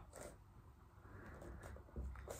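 Near silence: faint room tone with the soft sounds of a man's body moving as he lowers into a push-up.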